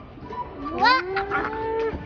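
A person's voice calling out: a rising call about three-quarters of a second in that settles into one long, drawn-out held note until near the end.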